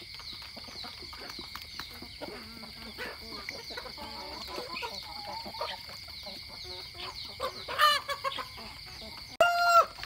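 Chickens clucking, then a rooster crowing loudly near the end; a second loud, held crow cuts in abruptly just before the end.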